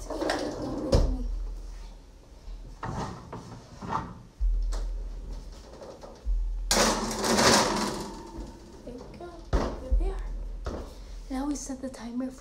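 Oven door clunking open, then a metal baking tray rattling and scraping onto the oven's wire rack for over a second, then the door knocking shut.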